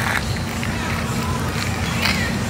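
Footsteps and handling noise of a person walking along a dirt path with a phone, over a steady low rumble.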